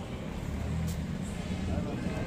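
Faint voices in the background over a low, steady rumble, with a short click a little under a second in.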